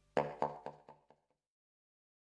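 Closing notes of background music on a plucked guitar: a run of about five notes, each quieter than the last, fading out about a second in.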